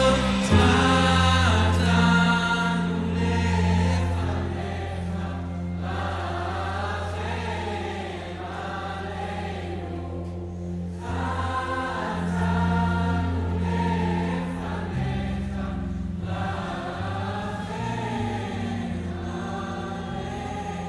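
Several voices singing a Hebrew worship song together, over a band with sustained low bass notes and keyboard.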